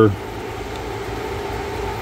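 A steady whirring hum of a fan running, even and unchanging throughout.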